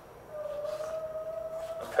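A voice holding one long hesitation hum, a steady note that rises slightly. It starts a moment in and stops just before the next word.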